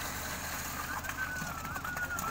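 A bird calling: one thin, wavering whistled note that starts about a second in and carries on past the end, over a steady low hum.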